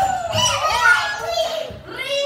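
Dancing cactus mimic toy repeating the "hello" just said to it, played back in a sped-up, high-pitched chipmunk-like voice.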